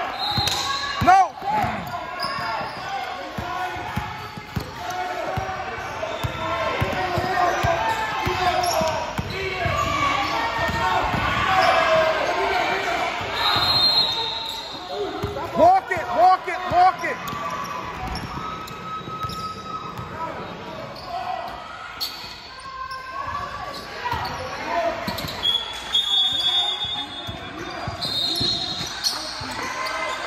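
A basketball bouncing again and again on a gym floor as it is dribbled, with sneakers squeaking and voices of players and spectators echoing through the hall.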